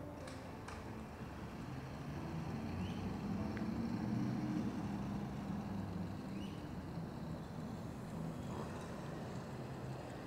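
Outdoor traffic: a motor vehicle's engine running low and steady, swelling to its loudest about four seconds in and then slowly fading as it passes.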